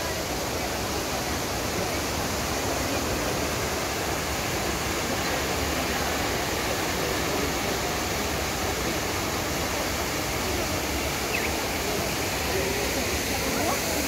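Trevi Fountain's water cascading over its rocks into the basin, a steady rushing, with the indistinct chatter of a crowd underneath.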